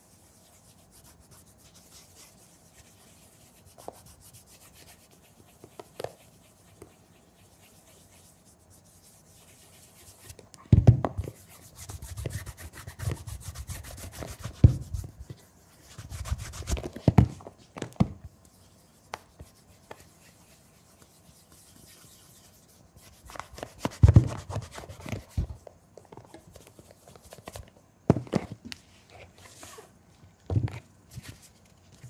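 Cotton cloth buffing wax to a mirror shine on a leather shoe. It starts as a faint, soft rubbing, then turns into louder, uneven spells of rubbing with low knocks as the shoe is handled against the counter, about halfway through and again later.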